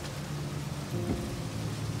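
Rain falling on a car's windscreen and body, under a low, sustained music score.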